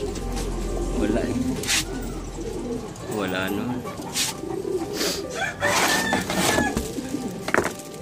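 Breeder pigeons cooing repeatedly in a loft's wire cages, with a few sharp clicks mixed in.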